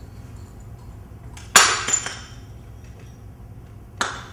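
A handmade clay ceramic cup is smashed. There is one sharp crash about a second and a half in, with pieces clinking briefly after it, then a second crash at the very end.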